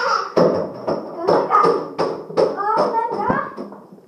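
Children's voices over a run of thuds and taps as barefoot children clamber on a stair railing and run up wooden stairs.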